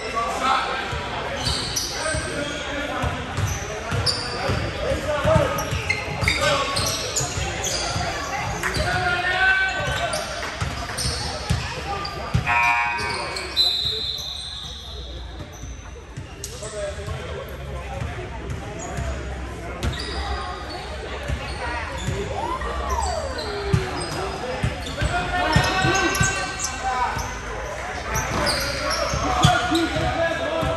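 Basketball bouncing and players' footfalls on a hardwood court during a game, echoing in a large gym.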